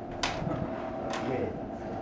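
Low murmur of voices over a steady room hum, with two short sharp clicks, one near the start and one about a second later.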